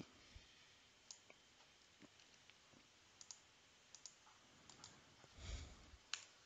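Near silence with faint, scattered clicks of a computer mouse and keyboard, about a dozen spread through, and a soft low thump near the end.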